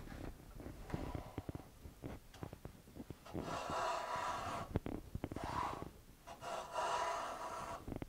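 Low-angle jack plane run on its side along a shooting board, trimming the edge of a thin wooden guitar end-wedge strip: light knocks and scrapes at first, then two longer hissing shaving strokes, one about halfway through and one near the end.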